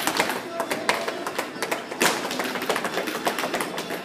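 Recorded Mexican folk music for a Jalisco folklórico dance, with dancers' zapateado footwork: many quick, uneven taps and stamps on the floor. One stamp about two seconds in is stronger than the rest.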